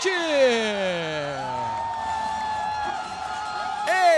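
A drawn-out vocal cry sliding down in pitch, then a long high held note, over a cheering arena crowd.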